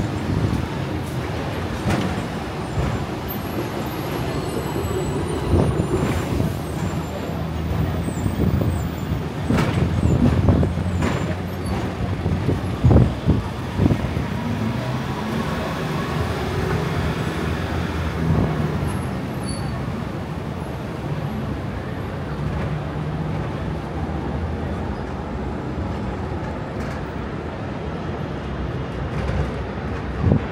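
Hong Kong double-decker tram running along its street track, heard from on board: a steady low rumble and hum with a few short knocks, amid city traffic.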